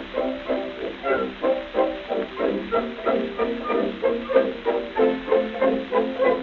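Dance orchestra playing an instrumental stretch of a 1925 shimmy over a steady, bouncing beat of about three to four pulses a second. It is heard from an early gramophone recording, with a thin, narrow sound lacking deep bass and high treble.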